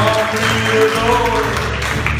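Live country band playing an instrumental break between verses: acoustic guitars strummed under a fiddle, with held, sliding melody notes.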